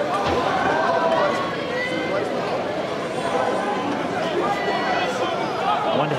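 Indistinct voices talking and chattering, no words clear enough to make out, over a steady outdoor background.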